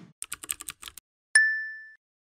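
Sound effect of keyboard typing, a quick run of about eight clicks, followed by a single bright ding that rings out and fades over about half a second.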